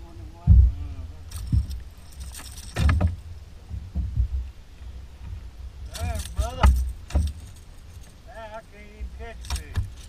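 Wind buffeting the microphone as a low rumble, with scattered thumps and light rattling as a freshly caught bass and its lure are handled on a fibreglass boat deck.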